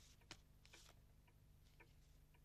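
Near silence with faint rustling of paper and a few light clicks as letters are handled.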